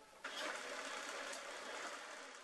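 Electric banknote counting machine running, riffling a stack of US dollar notes through in a fast, steady whir that starts suddenly about a quarter of a second in.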